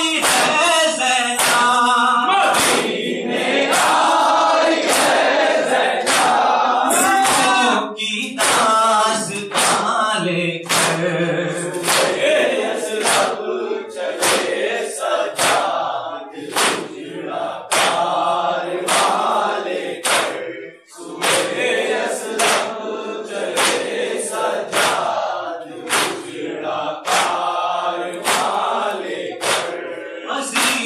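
A group of men chanting a nauha, a Shia mourning lament, in unison without instruments, led through a microphone. Regular sharp hand strikes of matam (chest-beating) keep a steady beat under the chant.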